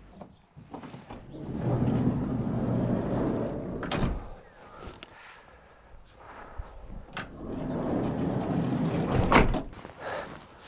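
Campervan's sliding side door run along its track twice, each time ending in a bang: it stops open about four seconds in, then is slid shut with a louder slam near the end.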